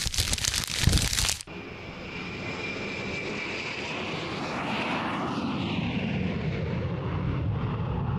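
Jet airliner sound effect: a steady rushing jet noise that comes in after about a second and a half and holds, with a slow downward sweep in pitch in the middle. It opens with a burst of crinkling handling noise.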